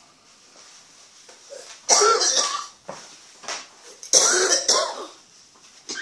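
A man coughing in two loud fits about two seconds apart.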